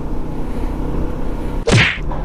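Honda Winner X 150 motorcycle's single-cylinder engine running steadily while riding. Near the end comes a short, loud rushing burst that sweeps down in pitch.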